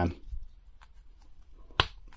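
Faint plastic handling noises, then one sharp click near the end as a plastic action figure's head is snapped back onto its neck ball peg.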